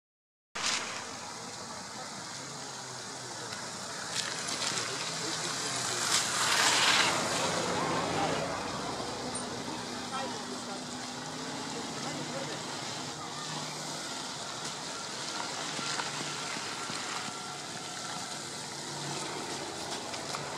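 A huge flock of bramblings passing overhead: a dense, steady rush of sound that swells to its loudest about six to eight seconds in.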